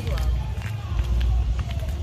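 Low rumble of wind and handling noise on a phone microphone carried along while walking, with faint voices talking underneath.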